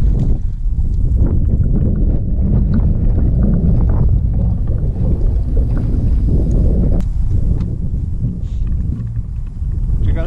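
Wind buffeting the camera microphone, a steady loud low rumble, with a single sharp click about seven seconds in.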